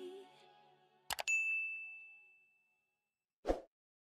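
A background song fades out. Then come two quick mouse-click sound effects and a single bright bell ding that rings out and fades: the sound of an animated subscribe-button overlay. A short thump follows near the end.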